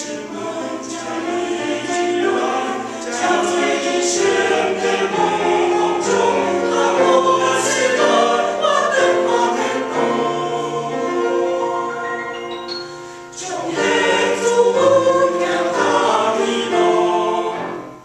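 Mixed church choir singing an anthem in Taiwanese in full chords, easing off briefly about two-thirds of the way through and then swelling again before the phrase ends.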